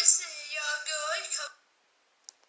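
A voice narrating a storybook, played through a laptop's small speakers and picked up in the room, thin and without bass. It stops abruptly about three-quarters of the way in, leaving silence.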